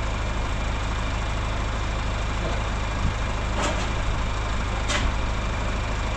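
Massey Ferguson tractor engine idling steadily, cold after sitting through the winter. Two light clicks come in the second half.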